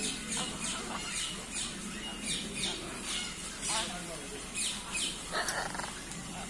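Birds calling in an aviary: rapid high chirps, each sliding downward in pitch, several a second, and a harsh squawk about five seconds in. A low murmur of voices runs underneath.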